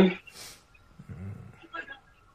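Men's voices over a video chat: the end of a word, a short hiss, then a low-pitched vocal sound about a second in, and a few faint murmured syllables near the end.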